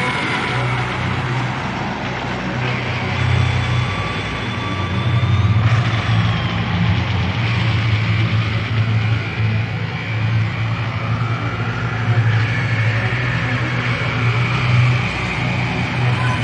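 Heavy metal band playing an instrumental passage: a dense wash of distorted electric guitar over a pulsing low bass line, with a high melodic lead guitar line above.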